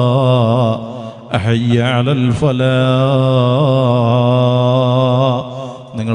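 A single voice chanting in long, drawn-out melodic phrases with a wavering pitch, breaking off briefly about a second in and again near the end.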